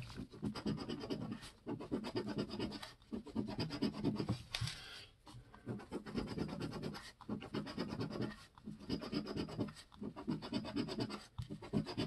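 Edge of a large copper-coloured coin scraping the latex coating off a paper scratch-off lottery ticket: quick back-and-forth strokes in bursts of one to two seconds, with short pauses between them as the coin moves to the next spot.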